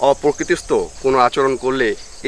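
A man talking in Bengali in continuous, animated speech.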